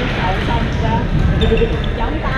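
Echoing sports-hall din from badminton games on several courts: voices of players mixed with the knocks of footwork and play. A brief high squeak comes a little past halfway.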